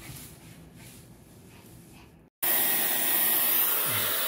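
Soft towel rustling for about two seconds, then a hair dryer cuts in abruptly, running loud and steady as it blows air on a wet puppy's fur.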